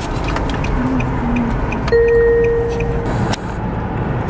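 Car interior road noise while driving, a steady low rumble. About two seconds in, a single steady tone sounds for about a second and is the loudest thing heard.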